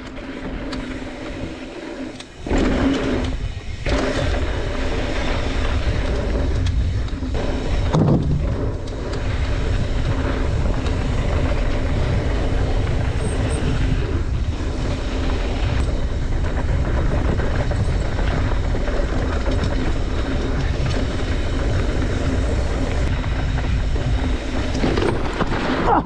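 Wind rushing over the camera microphone and knobby tyres of a Trek Slash mountain bike rolling fast down a dirt and gravel trail, a steady rushing rumble. It is quieter for the first couple of seconds, then rises and holds steady.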